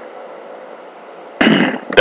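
CB radio receiver hiss with a faint steady hum between transmissions, then a sudden loud burst about one and a half seconds in as the next transmission comes through.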